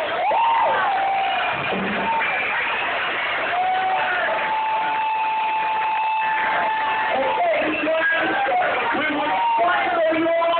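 Live rock band playing in a club, with a singer's held and sliding vocal calls over the music and the crowd cheering; one note is held for about three seconds in the middle.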